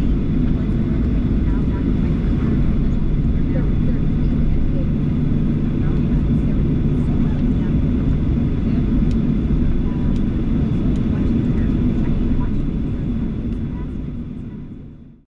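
Cabin noise inside a Boeing 737-900 taxiing after landing: a steady low rumble from the CFM56 engines at taxi thrust, with a thin steady high whine above it. It fades out near the end.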